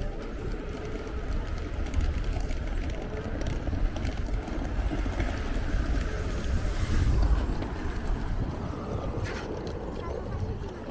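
Outdoor ambience dominated by a low, gusting rumble of wind on the microphone, swelling about seven seconds in.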